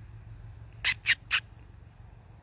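A steady, high-pitched chorus of insects chirring throughout, with three short, sharp sounds in quick succession about a second in.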